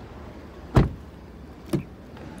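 A pickup truck door slamming shut with a solid thud about a second in, followed by a lighter knock near the end.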